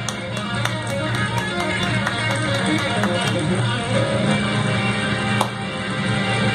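Electric guitar solo played as a run of many quick picked notes over a steady low backing.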